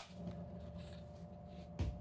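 A single sharp click at the start, then a low steady hum, with a dull low thump near the end.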